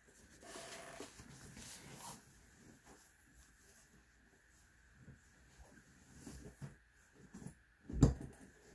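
Faint handling sounds of a fabric pencil case being lifted and moved off a cutting mat: soft rustles and small knocks, ending in one sharp knock.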